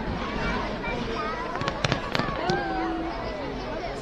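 A fireworks display going off overhead, with a quick cluster of sharp bangs and crackles about halfway through.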